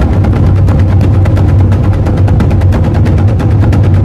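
A rapid drumroll: fast, even drum strikes, about a dozen a second, over a steady low rumble.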